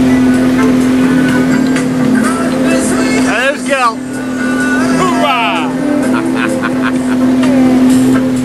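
Houseboat's engine running with a steady low drone while the boat is under way. Voices glide and shout over it about three and a half and five seconds in.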